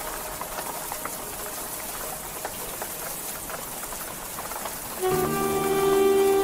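A steady patter of rain with small drop clicks, part of a slideshow soundtrack, with faint music under it. About five seconds in, a sustained chord of several held notes enters and gets louder.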